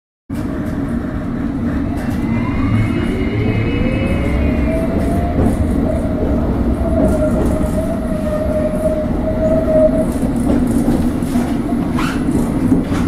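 Inside a London Underground S Stock carriage as the train accelerates away from a station. The traction motors' whine rises in pitch over a few seconds, then holds steady, over the constant low rumble of the wheels on the track.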